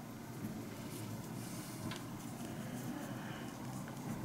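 Quiet room tone with faint handling noise from a crochet hook and cotton yarn being worked by hand, and one faint tick about two seconds in.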